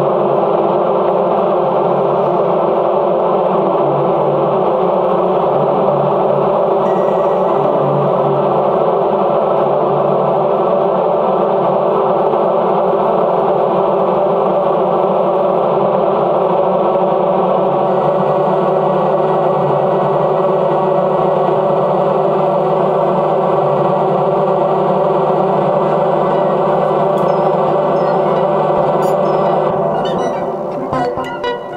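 Dense drone of many overlapping held synthesizer tones from a Korg AG-10 General MIDI sound module, its notes sent from the Fragment spectral synthesizer over MIDI. It stays steady and loud, with faint high tones joining a little past the middle.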